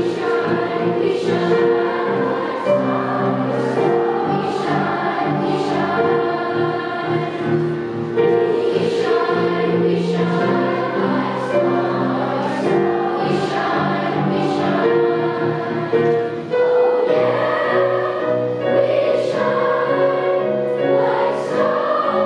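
Large choir of children's voices singing a sustained melody in held notes that change every second or so, the group's 's' consonants landing together as short hisses.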